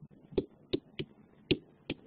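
Stylus tapping and clicking on a tablet screen during handwriting: about six short, sharp clicks at an uneven pace.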